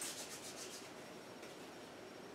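Hands rubbing together to spread freshly applied homemade hand sanitizer of rubbing alcohol and aloe gel, a faint, quick swishing of skin on skin. The strokes come fast in the first second and then die away.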